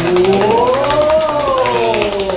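Rapid clicking from a roulette-wheel app spinning on a phone, under one long siren-like wail that rises in pitch for about a second and then falls.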